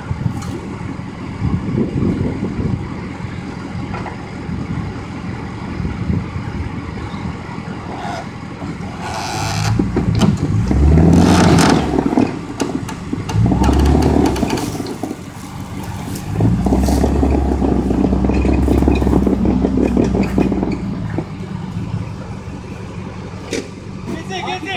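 Off-road vehicle engines revving in several long pulls, loudest about ten to twelve seconds in and again from about seventeen to twenty-one seconds in. This is a strap recovery of a Jeep Grand Cherokee that is stuck on its axle on rocks.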